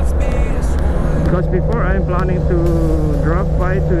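Motorcycle engine running steadily at cruising speed, with wind rumble on the handlebar-mounted camera's microphone.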